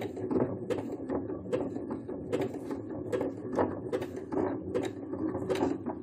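Electric sewing machine stitching slowly at its minimum speed on a zigzag stitch. The needle clacks nearly four times a second over a steady motor hum.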